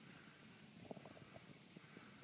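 Near silence, with faint scattered low crackles.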